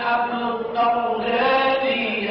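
Male chanting of Lebanese zajal verse: long, held notes in a wavering melody, broken by short breaths.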